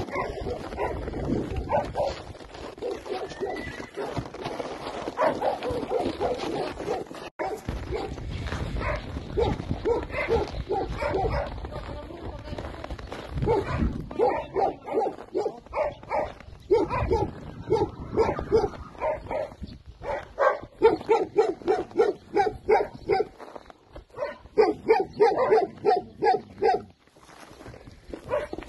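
A dog barking in rapid runs of short barks, several a second, most densely in the second half. Wind rumbles on the microphone in the first half.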